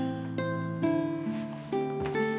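Background music score: a light melody of plucked-string notes, a new note about every half second, over sustained low notes.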